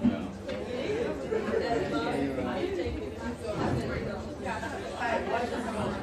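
Many overlapping voices of students talking in small groups at once, a steady indistinct chatter with no single voice clear.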